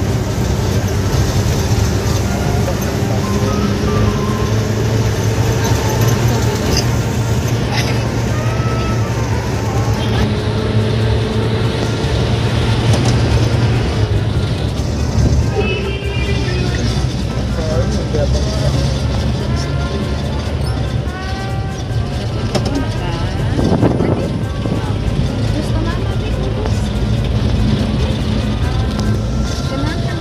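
Engine and tyre rumble inside a small car's cabin while driving, steady throughout, with music and voices over it.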